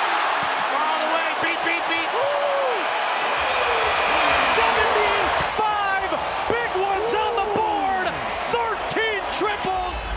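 Basketball arena game sound: steady crowd noise with many short sneaker squeaks on the hardwood court and a few sharp knocks of the ball from about four seconds in.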